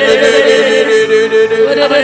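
A voice praying in tongues in a sustained, chant-like flow, its pitch wavering rapidly up and down, with short breaks about halfway through.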